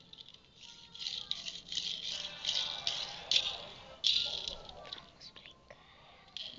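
Rattling and rustling of a small object handled close to the microphone, in uneven bursts, loudest about three and four seconds in.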